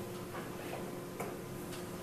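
Quiet room tone with a faint steady hum and a few soft, scattered clicks.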